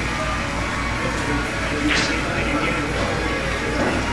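Pool-hall room noise: background music and indistinct chatter over a steady low hum, with a single sharp click about two seconds in.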